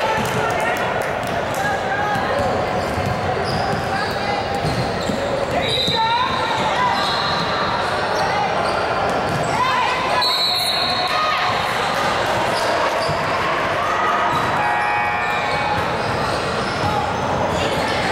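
Basketball bouncing on a hardwood gym floor during a game, among the voices of players and onlookers echoing in a large hall. Short rising squeaks come about six and ten seconds in.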